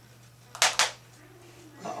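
Great horned owl bating on the glove: two sharp, loud wing flaps about half a second in, a fifth of a second apart.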